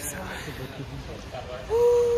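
A person's voice holding one steady note for under a second near the end, after faint talk.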